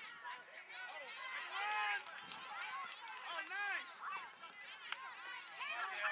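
Overlapping, indistinct shouts and calls from several high voices, unintelligible at a distance, coming and going throughout.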